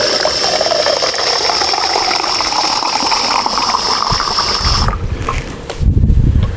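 Soda syphon dispensing carbonated water under CO2 pressure into a glass: a steady hissing spray that rises in pitch as the glass fills, stopping about five seconds in.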